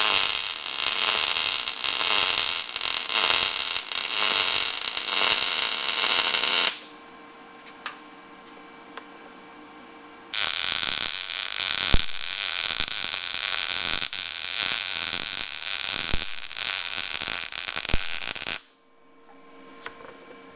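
MIG welding arc crackling steadily as a longer weld is run joining steel square tubing to steel plate after the corners have been tacked. The arc stops about a third of the way in, a few seconds pass with only a faint hum, then a second weld crackles for about eight seconds and cuts off shortly before the end.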